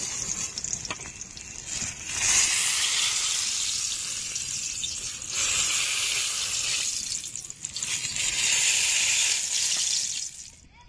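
Brinjal (eggplant) slices sizzling in hot oil in a wok. The sizzle is quieter at first, then comes in loud stretches of a few seconds with short lulls between.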